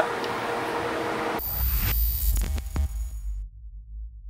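Steady fan-like hum of machinery, with two steady tones in it, for about a second and a half. It then gives way suddenly to an outro logo sting: a deep rumbling swell with a high ringing tone and a few sharp hits, fading out by the end.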